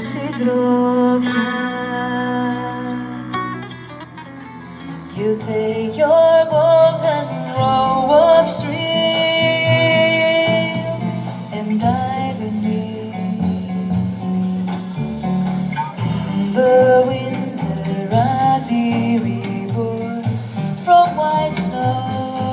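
Live trio music: a woman singing over a plucked string instrument, double bass and drum kit. The sound dips about four seconds in, and a different performance starts a second or two later.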